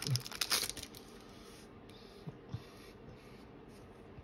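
Soft rustling as a freshly opened pack of Pokémon trading cards and its foil wrapper are handled, mostly in the first second, then only faint handling with a couple of light ticks.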